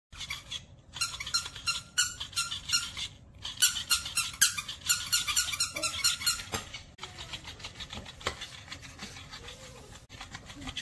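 Squeaker inside a plush fish dog toy squeaking rapidly and over and over as a puppy bites and shakes it, stopping about seven seconds in; fainter rustling of the toy follows.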